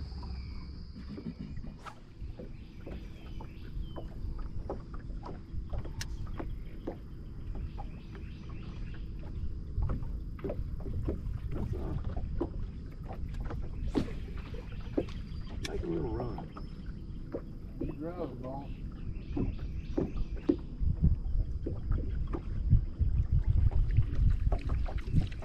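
Wind on the microphone and water lapping against a bass boat's hull, with scattered light clicks and knocks and a brief stretch of faint voices in the middle; the wind noise grows stronger near the end.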